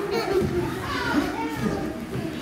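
Hubbub of many overlapping voices, children's among them, chattering and calling in a large hall, with no single speaker standing out.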